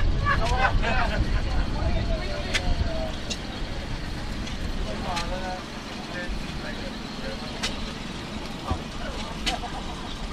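Outdoor show ambience: voices of people talking nearby, over a low rumble that is heaviest in the first few seconds and then eases, with a few short sharp clicks.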